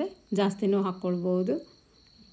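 A woman speaking briefly, then stopping, over a faint, steady, high-pitched whine that continues throughout.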